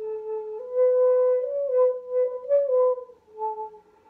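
Shakuhachi (end-blown bamboo flute) playing a short phrase of a few held notes close together in pitch, stepping slightly up and down with brief breaks between them. It starts suddenly and ends on a lower note that fades away.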